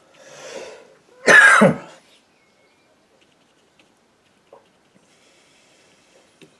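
A man's single loud cough about a second in, after a breath in.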